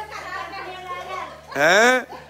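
Several voices murmuring in a room, then near the end one loud, drawn-out vocal exclamation from a woman whose pitch rises and then falls.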